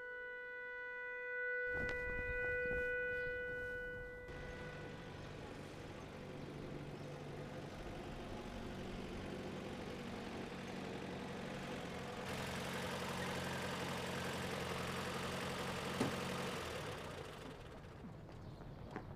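A long held woodwind note from background music fades out over the first few seconds. Then an old canvas-topped military jeep's engine runs steadily as the jeep drives in, and is switched off about a second before the end, with a single click just before.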